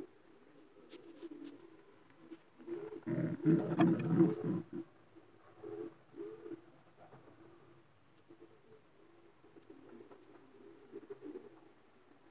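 Racing pigeons cooing low and rolling. The cooing is loudest from about three to four and a half seconds in, then goes on more softly and on and off.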